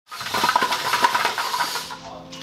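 Small VEX competition robot running on its field: its electric motors give a steady whine, over dense, fast clicking and rattling from the metal frame and plastic game pieces.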